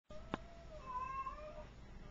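A spotted tabby cat giving one long meow that steps up in pitch partway through and ends about one and a half seconds in. A sharp click sounds about a third of a second in.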